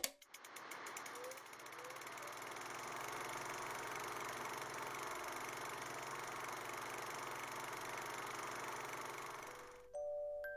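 Film projector sound effect: a quick run of clicks, then a steady faint mechanical whir that fades out near the end.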